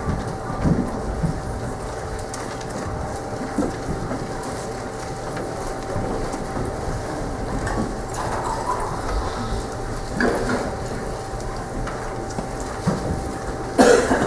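A church congregation rustling and shuffling as people get to their feet and turn to a passage in their Bibles, with scattered soft knocks over a steady hum; a louder knock comes near the end.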